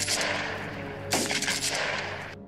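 Gunfire sound effect: two shots, one at the start and one about a second in, each fading out slowly, over a sustained music drone.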